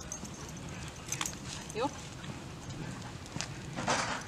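Footsteps of a person and a leashed dog walking on pavement, heard as a few scattered sharp clicks over a steady low outdoor rumble, with a short spoken 'yup' about halfway through.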